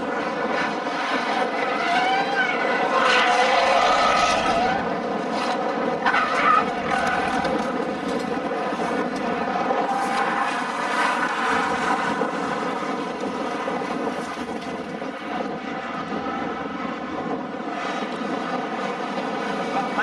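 Peugeot 206 race cars' engines revving and easing off as they run through the corners, over a steady droning tone underneath.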